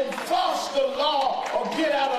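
Only speech: a man talking into a pulpit microphone, with no other distinct sound.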